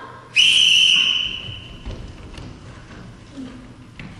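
A whistle blown once: a single shrill blast of about a second that starts sharply and then fades away.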